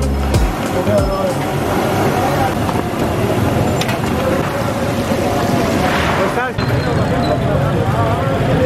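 Busy street-market ambience: a babble of voices over steady traffic noise, with a brief break about six and a half seconds in.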